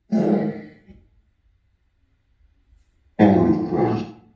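Spirit box output: two short, rough voice-like bursts of under a second each, the first just after the start and the second about three seconds in, with near silence between. The listener takes them for a spirit saying 'they plan my murder' and 'powders crushed'.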